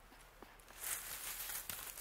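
Dry wood-chip mulch rustling as hands sweep it back over the soil, starting just under a second in.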